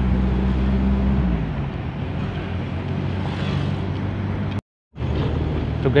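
Car engine and road noise heard inside the cabin while driving: a steady low engine hum whose pitch drops a little over a second in, then a rumble. Near the end the sound cuts out completely for a moment.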